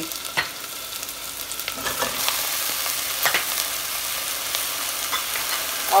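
Onions and chopped ridge gourd frying in hot mustard oil in a pressure cooker: a steady sizzle that grows louder about two seconds in as the vegetable goes in. A few sharp clicks of a steel slotted spoon against the pot.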